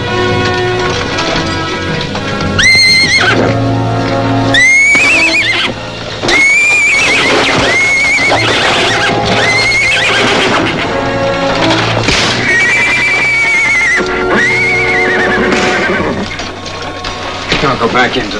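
Horses whinnying again and again, a string of high calls that waver up and down, one of them held longer, over orchestral film score.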